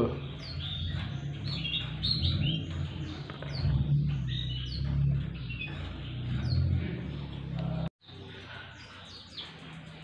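Caged black-throated canaries (blackthroats) singing: a busy run of short chirps and quick high downslurred notes, over a steady low hum. About eight seconds in the sound cuts off abruptly and returns as quieter, sparser chirping.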